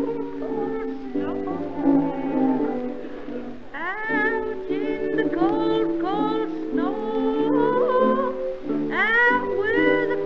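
Music-hall band accompaniment playing sustained chords, with a run of short swooping upward slides over it from about four seconds in.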